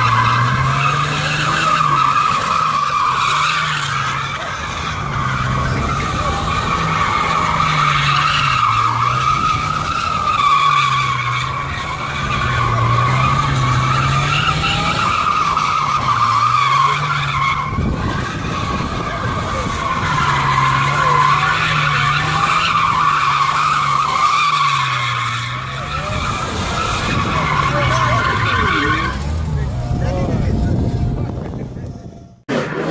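Ford Thunderbird coupe doing donuts: its tyres squeal continuously while the engine is held at high revs that rise and fall again and again. The squeal breaks off briefly partway through and stops just before the end.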